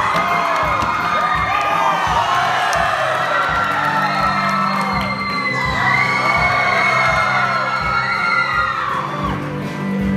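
A group of young men whooping and cheering over a steady rhythmic beat. Low held notes from the men's choir come in about three or four seconds in.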